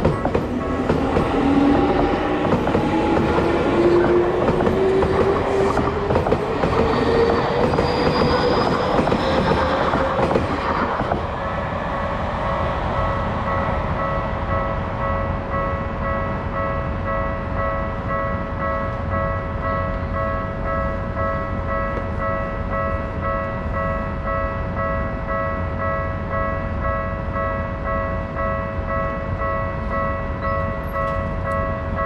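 Electric commuter train passing over a level crossing, its motor whine rising steadily in pitch as it accelerates over the rumble of the wheels. The train noise dies away about eleven seconds in, leaving the level crossing's warning alarm ringing on steadily.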